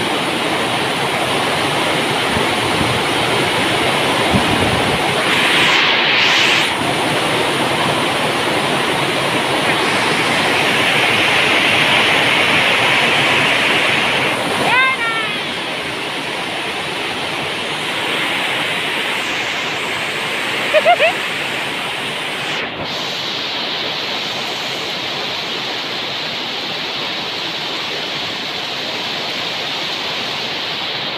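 Very heavy rain falling steadily, a dense unbroken hiss of water. A few brief gliding sounds cut through it around the middle.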